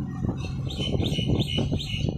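A bird chirping, a quick run of about four repeated high notes starting about half a second in, over a steady low rumble.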